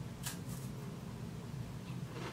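A Tim Tam chocolate-coated biscuit having its corner bitten off: a short, faint crunch about a third of a second in and a softer one near the end, over a steady low hum.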